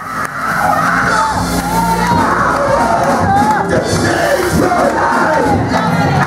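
Church congregation calling out and cheering, many voices at once, over steady sustained music.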